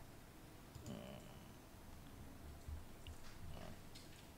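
Quiet room tone with a few faint computer-mouse clicks.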